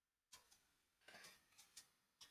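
Very faint computer keyboard keystrokes: a few scattered, separate clicks of typing.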